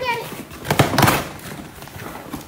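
Packaging being pulled open by hand: a brief noisy rustle about a second in.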